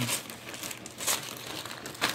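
Clear plastic zip bag of game tokens crinkling as it is handled, with irregular crackles, one sharper about a second in.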